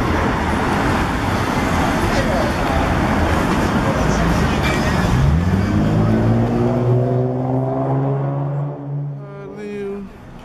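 City street traffic noise. About halfway through, a vehicle engine's note rises, holds steady for a few seconds, then fades near the end.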